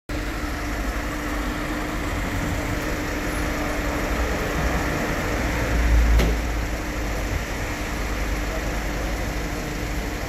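Street traffic: cars driving slowly past with a steady rumble and hum, one passing close and loudest about six seconds in.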